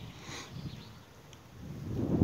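Quiet open-air ambience with no distinct event. Wind buffets the microphone as a low rumble that builds near the end.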